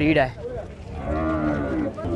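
A bovine mooing: one long moo that starts about half a second in and holds for well over a second.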